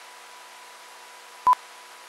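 Steady hiss with a faint steady tone under it, broken about one and a half seconds in by one short, loud, high beep. This is the sync 'two-pop' of a film-leader countdown, which falls two seconds before the programme sound begins.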